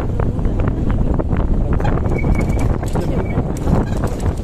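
Vehicle driving over a rough dirt track: a steady low rumble with wind on the microphone, and frequent small clicks and rattles from the bumpy ride.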